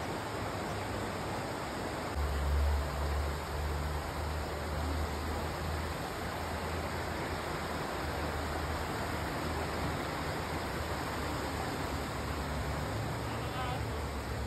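Shallow rocky river rushing over stones: a steady hiss of running water. A low steady hum joins it about two seconds in and carries on underneath.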